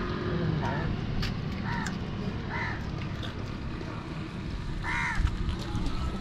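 About four short, harsh bird calls spaced over several seconds, the loudest one near the end, over a steady low background rumble.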